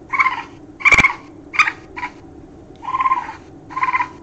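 Recording of baby raccoon (kit) calls played back: a series of short, high chittering calls, about six in four seconds, the general call heard from a raccoon nest with pups. A sharp click sounds about a second in.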